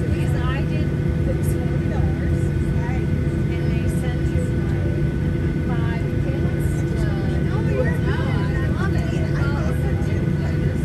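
Steady low hum inside the cabin of a parked Boeing 737-800, with a constant thin whine over it, and passengers chatting indistinctly.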